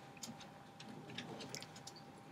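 Faint, irregular clicks from a computer being operated, over a low steady room hum.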